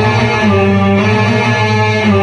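Electronic arranger keyboard playing a slow Arabic melody in long held notes, changing note about halfway through.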